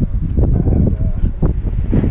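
Wind buffeting the microphone, a loud low rumble, with a few brief handling sounds as items are moved about in the truck bed.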